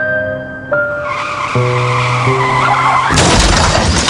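Car tyres squealing in a skid, rising from about a second in, then a loud crash about three seconds in as the car hits something. Music plays underneath.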